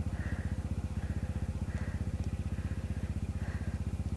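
Two-stroke dirt bike engine idling with a fast, even, steady beat.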